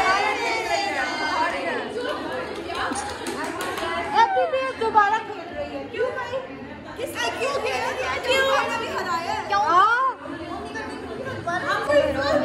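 Several women's voices talking over each other in lively group chatter in a room.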